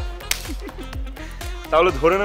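A single quick, sharp smack a fraction of a second in, a hand slapping a man on the head, over background music.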